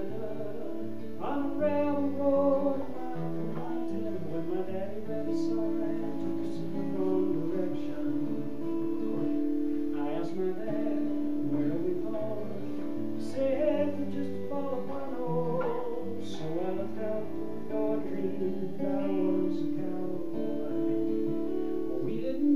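Acoustic guitar strummed and picked in steady chords, an instrumental passage between sung verses, amplified through a column PA.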